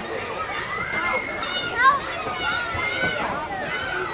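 Several voices talking and calling out at a distance, overlapping, with one louder call a little before two seconds in.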